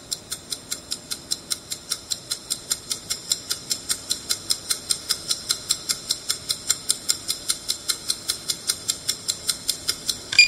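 Stopwatch ticking sound effect: fast, even ticks, about five a second, slightly louder in the middle.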